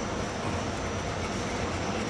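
Steady background noise with a low hum underneath and no distinct events.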